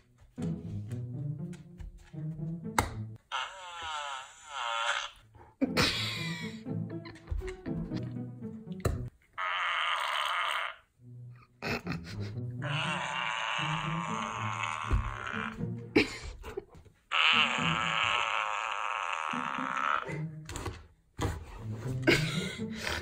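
Poop-emoji plush dog toy knocking onto a hard tile floor as the dog drops it, then playing its recorded fart sound, several times over. Background music plays throughout.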